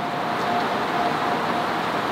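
Steady outdoor street background noise, an even hiss like road traffic, with a faint thin tone that comes and goes.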